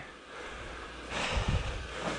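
One short, breathy exhale about a second in, with a soft low thump, over a faint steady hum.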